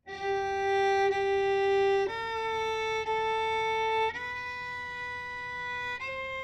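Solo violin playing the opening of a G scale in third position on the D string: three slow, long bowed notes, each held about two seconds, rising step by step.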